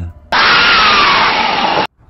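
A loud burst of harsh noise lasting about a second and a half, with a faint tone falling in pitch inside it. It starts and cuts off abruptly, like an edited-in sound effect.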